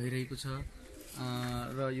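A man's voice drawing out wordless hesitation sounds between phrases: a short one at the start, then a longer held one at a steady low pitch in the second half that bends at its end.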